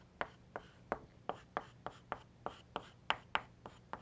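Chalk writing on a blackboard: a quick series of short taps and scrapes as the strokes of an equation go down, about three or four a second.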